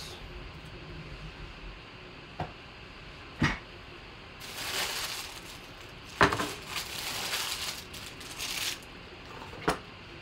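Opened foil trading-card pack wrappers and cards being handled on a table: a crinkling rustle from about four and a half to nine seconds in, with a few sharp taps and clicks scattered through.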